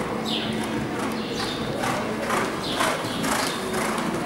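Horse cantering on indoor arena sand footing: hoofbeats in a regular rhythm about twice a second, over a steady low hum.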